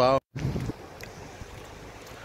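Wind rumbling on a phone microphone outdoors: a short louder gust about half a second in, then a steady low hiss.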